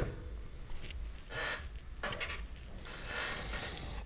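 Three short, soft brushing strokes of a paintbrush on watercolor paper, about a second and a half in, then at two seconds and three seconds, over a faint low hum.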